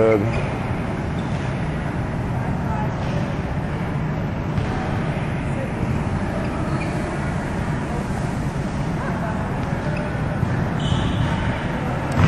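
Steady low background noise of a large indoor gym, with faint voices in it.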